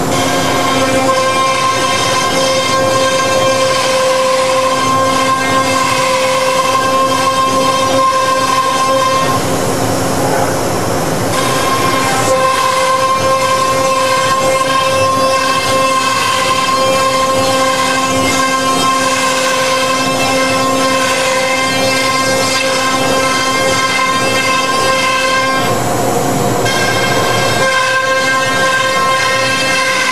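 Patriot 4x8 CNC router's 5 hp HSD spindle running at high speed as it cuts a groove in a sheet on the vacuum table: a loud, steady whine that shifts briefly about ten seconds in and again near the end.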